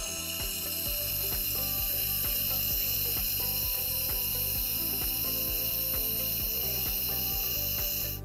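Steady high hiss of a surgical suction tube held at the tongue wound, cutting off abruptly, over background music with a steady beat.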